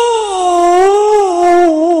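Male Qur'an reciter holding one long melismatic note in tilawah style, amplified through a microphone. The pitch sags gently and then breaks into quick wavering ornaments near the end.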